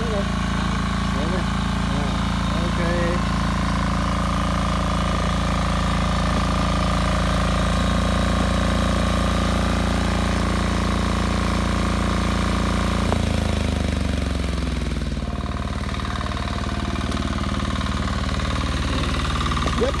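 Walk-behind tiller's small engine running steadily under load as its hilling blades throw soil around a tree base. About 13 seconds in, the engine note drops and slides down to a slower, pulsing idle.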